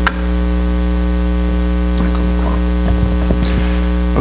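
Steady electrical mains hum, a stack of low buzzing tones, running loud through the sound system. A few faint clicks and knocks come as the podium microphone is handled, the sharpest at the very start.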